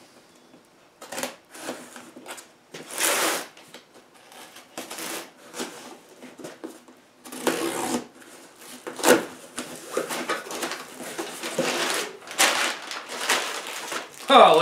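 Packing tape being peeled and ripped off a cardboard box, then the box flaps opened and packing paper pulled out and rustled. The sound comes as a string of short rasping strips and rustles with gaps between them, and one sharp snap about nine seconds in.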